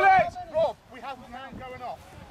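Only speech: voices talking, louder at the start and then fainter.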